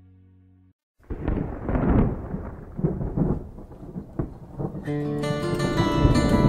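A held chord fades out, and after a brief silence a recorded thunderstorm starts about a second in: rumbling thunder with sharp cracks over rain, opening a country song. About five seconds in, the band's instruments come in over the storm.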